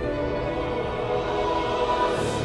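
Slow choral music: mixed choir holding sustained chords.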